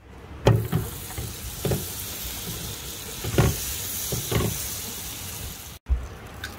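Food sizzling in a frying pan on a stovetop, a steady hiss, with a spatula knocking against the pan about five times. The sound cuts off abruptly near the end.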